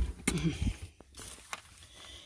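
A thump, then newspaper rustling as it is handled, with a brief vocal sound just after the thump and a single click about a second in.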